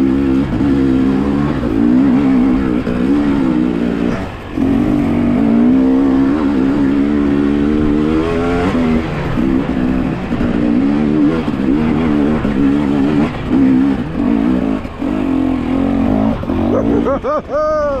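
Enduro dirt bike engine labouring up a loose, rocky climb, the throttle constantly opening and closing so the revs rise and fall, with a short drop off the throttle about four seconds in and a higher rev at about eight and a half seconds.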